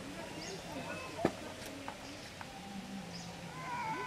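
Indistinct voices of people talking in the background, with a single sharp click a little over a second in and a couple of lighter ticks after it.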